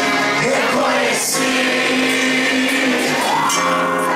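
Live band playing acoustic guitars with singing, the held sung notes carried over the strumming.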